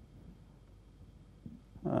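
Near silence: room tone in a small room while speech pauses, then a man's hesitant "uh" near the end.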